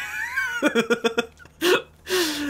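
A man laughing: a high, sliding squeal, then a quick run of laughing pulses.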